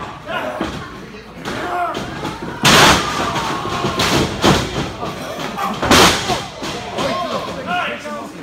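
Four heavy thuds of wrestling-ring impacts, bodies slamming into the ring and its mat. The loudest comes about a third of the way in and another near three-quarters, with two quicker ones between, and crowd voices throughout.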